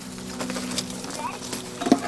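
Light scattered taps and scrabbling as a baby capuchin monkey climbs up a fabric pet stroller, over a steady low hum. A brief voice-like sound comes near the end.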